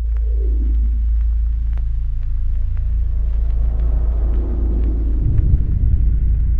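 Cinematic horror sound design: a deep, steady rumble with a tone sliding downward at the start and faint ticks about twice a second over it. The rumble turns heavier and more pulsing about five seconds in.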